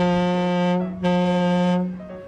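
Deep horn of a departing cruise ship, the Carnival Celebration, sounding two long steady blasts, each just under a second.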